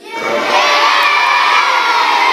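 A crowd of children in an audience shouting "yes" together. The shouting starts suddenly and stays loud.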